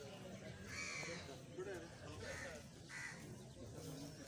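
A bird gives three short calls, about a second in, past the middle, and near the end, over faint distant voices.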